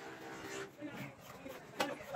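Voices talking in the background, with one sharp knock near the end.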